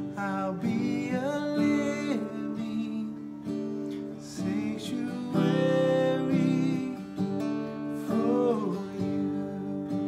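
A man singing a slow worship song while strumming chords on a Taylor acoustic guitar.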